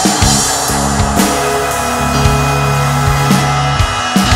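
Rock band playing an instrumental passage with no singing: drum kit with a cymbal crash near the start, electric bass holding a long low note through the second half, electric guitar and keyboard synths.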